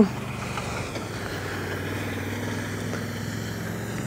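A utility vehicle's engine running steadily, a low even hum.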